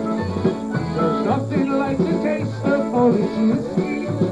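Live polka band playing an instrumental passage: a concertina carries a busy melody over a bouncing bass line of about two notes a second.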